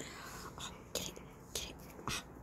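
A puppy breathing and snuffling through its nose in short airy puffs, several times, while tugging on a rope chew toy.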